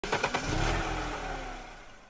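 Car engine running: a few quick revs, then one steady engine note that rises slightly and then slowly drops and fades as the car goes by.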